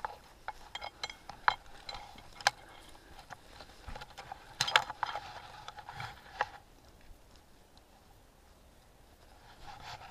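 Rubbing and rustling handling noise with scattered sharp clicks, bunched more densely about five seconds in, then settling to a faint hush for the last few seconds.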